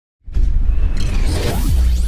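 Cinematic logo-intro sound effect: whooshing sweeps over a deep, steady low rumble, starting a moment in.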